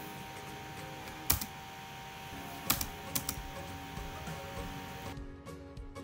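Background music with a few sharp clicks: one about a second in and three in quick succession a little before the middle. Near the end it changes to a new, sparser piece of music.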